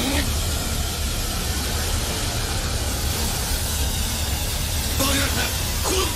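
Animated sound effect: a steady hiss over a low rumble as glowing energy cracks through a body. A short strained vocal sound comes in near the end.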